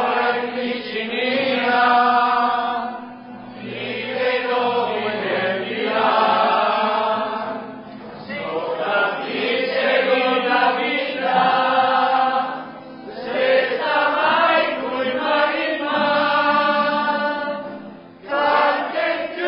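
Several voices singing together in long, held phrases, with brief breaks about every five seconds.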